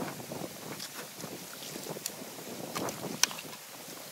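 Water rushing and splashing through a breach in a beaver dam while a long-handled tool works at the packed sticks and mud, with scattered knocks and cracks of branches; one sharp knock about three seconds in is the loudest.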